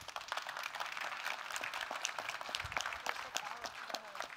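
Audience applauding: many small claps that build about half a second in and die away near the end.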